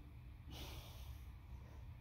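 Faint breathing from a man bent over an atlas stone as he sets up to lift it, over a low steady room hum.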